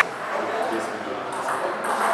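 Light pings of a table tennis ball being tapped ahead of a serve, over faint voices.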